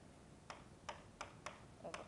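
Faint, irregular clicks of a pen stylus tapping on an interactive whiteboard while words are handwritten, about five in two seconds.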